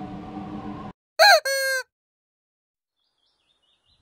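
A short, loud, bird-like call used as a sound effect: a quick rise and fall in pitch, then a held note, lasting about half a second. It comes just after a low background hum cuts off. Faint high chirps follow near the end.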